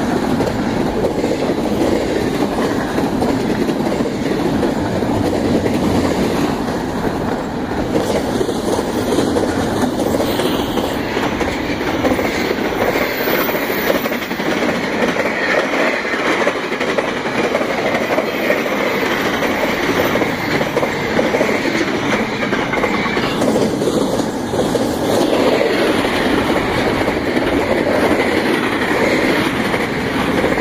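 Double-stack container cars of a fast intermodal freight train passing close by: steady, loud rolling noise of steel wheels on the rails, with no locomotive heard.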